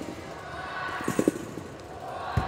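Gymnast's feet and hands striking a sprung tumbling track: a quick cluster of thuds about a second in, with a few softer ones at the start, over the background of a large hall.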